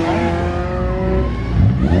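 Race car engine pulling away at low speed, its note rising gently and then fading about halfway through, over a low rumble of other engines.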